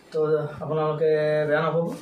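A man's voice drawing out syllables in a sing-song, chant-like way, held on a nearly steady pitch with a brief break near the middle.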